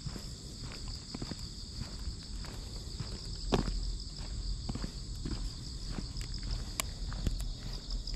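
Footsteps walking steadily on an asphalt road, about one to two steps a second, with one heavier step about halfway through. A steady high-pitched insect chorus from the grass runs underneath.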